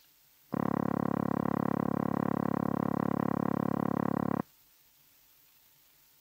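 Early automatic telephone exchange dialling tone: a low-pitched, continuous purring note, the signal to the caller that the line is ready to dial. It starts about half a second in, holds steady for about four seconds, and cuts off suddenly.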